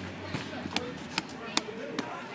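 A run of sharp, evenly spaced knocks or claps, about two and a half a second, over faint background voices.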